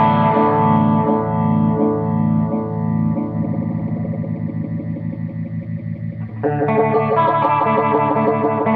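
Electric guitar played through a Dogmatek Arctic Wolf Twin Modulator phaser pedal: a chord rings out and fades while the phaser's pulsing sweep speeds up as a knob on the pedal is turned. A new chord is played about six and a half seconds in.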